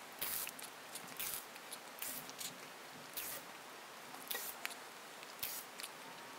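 Faint scattered crackles and short hisses from an e-cigarette, a Smok Alien 220 box mod and tank, as a first hit is drawn and the coil fires.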